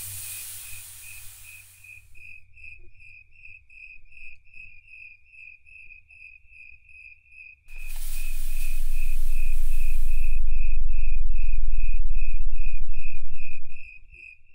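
Crickets chirping in a steady, even rhythm, a high pulsing note about three times a second. About eight seconds in a loud rushing whoosh comes in, leaving a deep rumble that swells and then cuts off suddenly near the end; a hiss fades out in the first two seconds.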